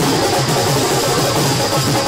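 Loud live drum-led street music playing with a steady beat.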